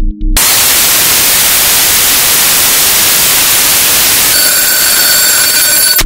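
The trap beat's drums and bass drop out a moment in, replaced by a loud, steady hiss of white noise as a break in the beat. About four seconds in, several high, steady tones join the hiss.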